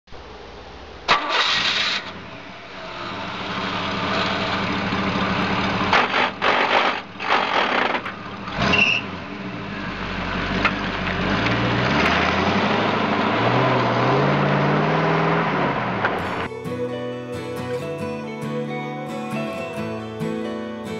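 An engine starting and revving in several surges, its pitch rising and falling, as an intro sound effect. Acoustic guitar music takes over near the end.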